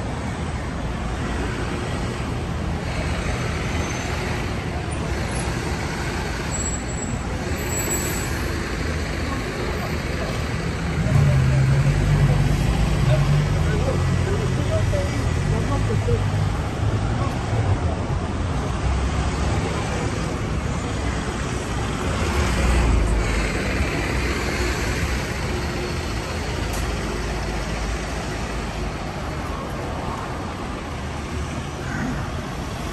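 Steady road traffic, with a heavy vehicle passing close about eleven seconds in as a loud low rumble for several seconds, and another passing around twenty-three seconds.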